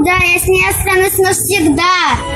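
A young girl singing, a run of held, wavering sung syllables that ends with the pitch sliding down.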